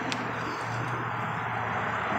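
Steady low hum and hiss of outdoor background noise, with one faint click just after the start as the BMW sedan's driver door swings open.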